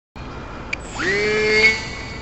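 Small electric RC airplane's motor and propeller, heard from a camera on board, whining up to speed about a second in, holding a steady pitch, then easing back near the end, over a steady background hum.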